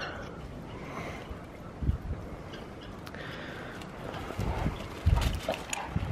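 Two Great Danes romping in snow: paws scuffling and moving over the snow, with a few low thuds.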